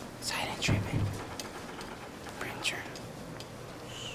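Hushed, whispered voices, brief and quiet: one stretch about a second in and another short whisper near three seconds.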